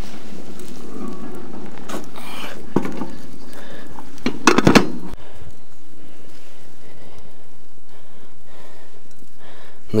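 A wide pan of fish stew, just uncovered, simmering with a steady hiss. A few sharp clinks and knocks come about two seconds in, again just under three seconds in, and in a quick cluster near the middle.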